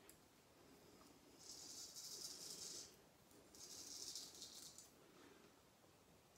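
Wade & Butcher 5/8 full hollow straight razor scraping through lathered stubble in two strokes, each about a second and a half long.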